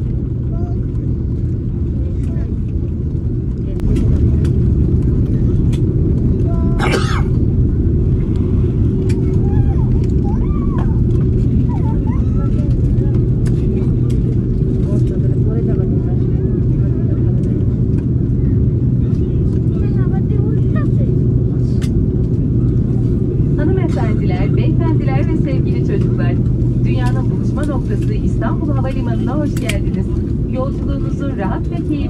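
Airliner cabin noise during the landing rollout: a steady low rumble of engines and wheels on the runway with a hum, growing louder about four seconds in. A single sharp click comes a few seconds later, with faint voices in the cabin.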